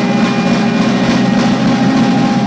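A live band playing loud, heavily distorted music: a dense, steady low drone with drums hitting underneath.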